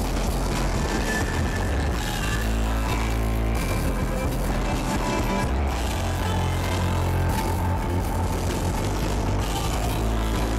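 Live rock band playing through an outdoor PA system: electric guitar, bass and drums, with a heavy, steady low end.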